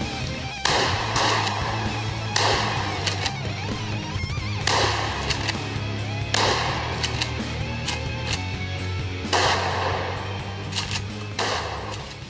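Background rock music with electric guitar, over several loud blasts from a 12-gauge Mossberg 500 Persuader pump-action shotgun being fired, about every two seconds.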